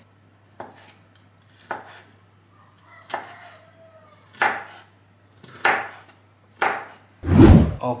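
Kitchen knife slicing through boiled pig ear and striking a wooden cutting board: six sharp cuts about a second apart. A loud dull thump comes near the end.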